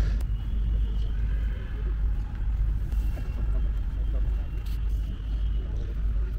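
Outdoor crowd ambience: a steady low rumble with faint, distant voices.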